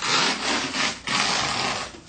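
Hands rubbing over a CoFlex cohesive compression wrap on a leg: two long, rough rubbing strokes of about a second each.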